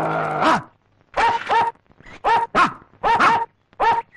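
A dog's long growl ends about half a second in, then the dog barks repeatedly in quick pairs, about one pair a second.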